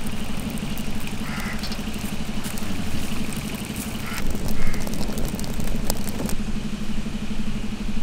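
A steady low mechanical hum, like an idling engine, runs throughout, with scattered small crackles and clicks from the open wood fire burning under the iron pan.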